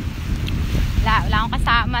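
Wind buffeting a phone's microphone, a loud, uneven low rumble throughout. A woman's voice comes in about a second in.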